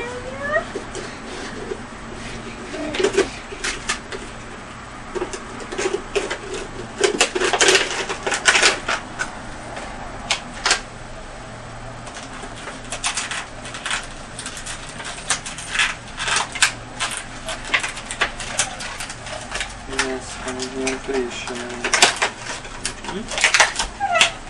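Gift packaging crinkling and rustling as a present is handled and unpacked, in irregular sharp crackles, with a few short bits of a child's and an adult's voice.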